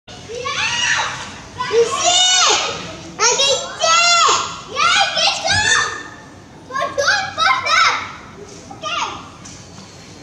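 A young child's voice calling out in high-pitched, drawn-out shouts, one phrase after another, tailing off near the end.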